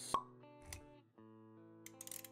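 Motion-graphics intro music of steady held notes, with a sharp pop sound effect just after the start and a softer low thud a moment later.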